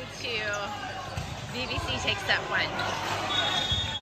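Several people talking at once in a gym, with a few low thuds about a second in and again near the end.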